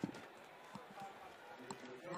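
Faint stadium ambience: distant crowd voices over a low murmur, with a few light knocks, the first near the start.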